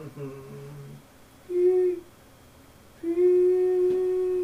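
A man's voice humming a low note, then two steady beep-like notes at the same pitch, a short one and then a long one, mimicking a handheld metal detector wand going off.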